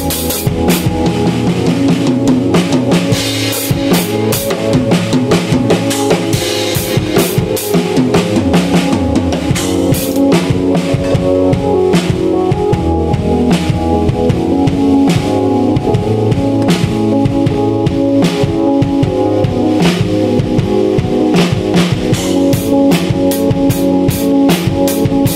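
Live jam of a Pearl drum kit played with dense bass drum, snare and cymbal hits, over sustained keyboard chords.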